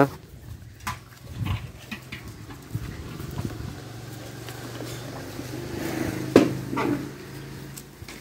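Sounds of small mixed-breed dogs playing close by: a steady low sound with scattered light clicks and scuffles, and a short louder sound from a dog about six and a half seconds in.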